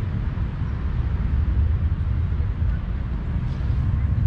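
Steady, wavering low rumble with a faint hiss over it: outdoor background noise with no distinct event.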